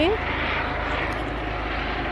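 A steady rushing noise over a low rumble, even throughout, with no distinct events.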